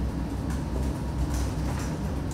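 Steady low rumble and hiss of room background noise picked up by the courtroom microphones, with no speech over it.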